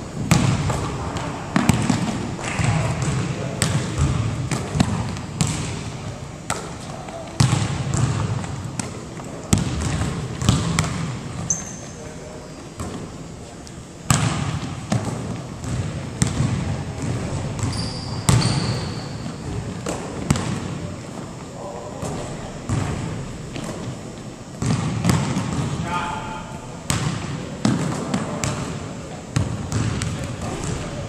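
Basketballs bouncing irregularly on a hardwood gym floor, with sharp thuds coming every second or so, mixed with indistinct voices.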